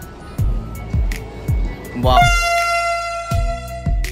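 A Vande Bharat Express train's horn sounds once as the train arrives, starting about two seconds in and held for nearly two seconds, over background music with a steady beat.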